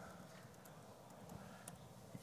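Faint typing on a laptop keyboard: a few soft key clicks over near silence.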